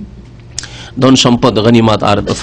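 A man lecturing in Bengali into a microphone, resuming after a pause of about a second. During the pause there is a low steady hum and a brief click.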